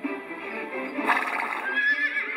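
A recorded horse whinny over background music, coming about a second in.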